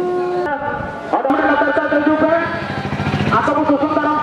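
A group of women singing together in unison, in long held notes that change pitch about a second in and again past the middle.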